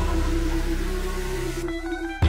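Pop song music with sustained held notes and chords, no vocals; near the end the music thins out to a brief near-break in the song.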